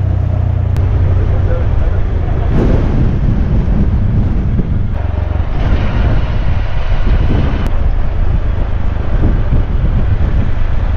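Auto-rickshaw (tuk-tuk) engine running steadily under way, heard from inside the open cab, with wind and road noise.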